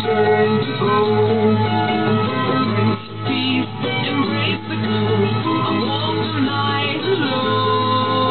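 Music with held notes and a melody, played back from a cassette just recorded on a Vega MP-120 Stereo cassette deck. The recording comes back at practically the same quality as the source, a sign that the deck records properly again.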